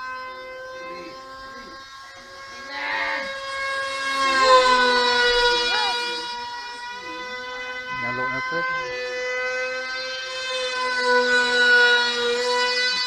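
Small electric remote-controlled model plane in flight: a steady high-pitched motor-and-propeller whine that swells and drops slightly in pitch about four seconds in, then grows louder again near the end.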